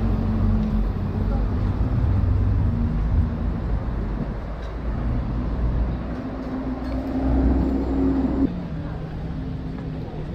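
Busy city street ambience: a steady low rumble of road traffic with people's voices mixed in. About eight and a half seconds in, the rumble cuts off abruptly and a quieter murmur follows.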